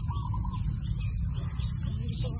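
Steady low rumble of wind buffeting the microphone outdoors, with a faint steady high buzz and a short warbling call near the start.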